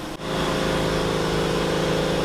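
Steady, even electric hum of a large drum fan running.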